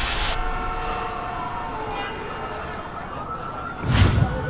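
Siren wailing, held tones that slowly glide down in pitch and then rise again, with a sudden low thump at the very end.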